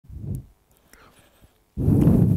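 A person's muffled voice close to the microphone, in two short bursts: one at the very start and a louder one near the end.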